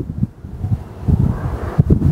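Irregular low rumble and thumps of air buffeting the microphone, heard as wind noise.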